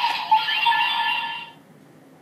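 Electronic music and sound effects from a Kamen Rider Revice toy stamp (Vistamp), which cut off about one and a half seconds in.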